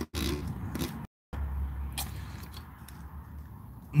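Faint bench noise at a soldering station: a steady low hum and soft hiss with a few small clicks, cutting out completely for a moment about a second in.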